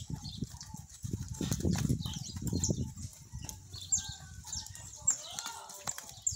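A group of calves moving about a corral, with a louder, rough low sound from about one to three seconds in. Short high chirps recur throughout.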